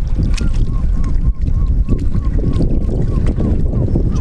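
Wind buffeting the microphone as a heavy, steady low rumble. Through it runs a faint short chirp, repeated evenly about three times a second.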